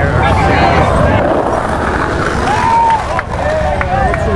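Crowd of street protesters: many voices talking and calling out over one another, over a steady low rumble of street noise.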